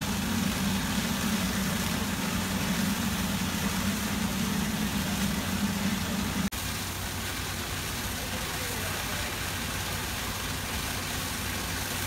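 Fire trucks' diesel engines running steadily at the fire ground, with the hiss of water streams over it. A low engine hum drops away at a sudden break about halfway through, leaving the steady rushing noise.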